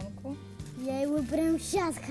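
Background music with sustained low notes, and a voice singing "da da da" as a mock drumroll, its pitch rising and falling, in the second half.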